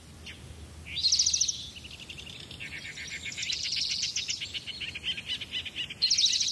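Birdsong: a short, rapid trill about a second in, then a longer trill of fast repeated high notes from about two and a half seconds until near the end.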